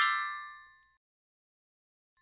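A metallic clang sound effect for a logo: it is struck with a quick falling sweep, then rings with several bright tones and fades out about a second in.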